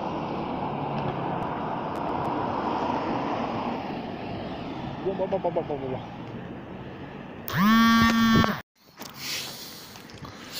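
Street traffic noise, a car passing close by and fading away, then a loud held pitched sound for about a second that cuts off suddenly.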